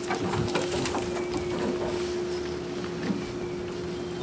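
Dry straw and brush rustling and crackling as it is pulled from a pickup truck bed, mostly in the first second and a half, over a steady hum at one pitch.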